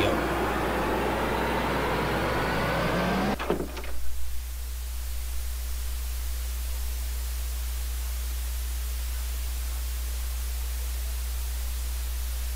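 Dark ambient drone from a horror film's soundtrack: a steady low hum under a dense, noisy layer that breaks off a little over three seconds in with a few brief knocks, leaving a faint hiss over the hum.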